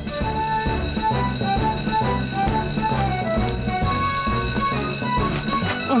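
Twin electric fire-station alarm bells ringing continuously, the call-out alarm for an emergency, over background music with a moving melody and a bass line.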